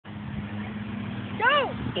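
A person shouts once, a rising-then-falling call about a second and a half in, over a steady low hum.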